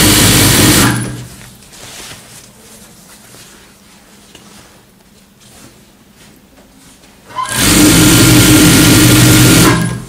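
TYPICAL industrial sewing machine running at speed in two bursts of stitching, each starting and stopping abruptly. The first stops about a second in. The second runs from about seven and a half seconds to just before the end, and it is quiet in between.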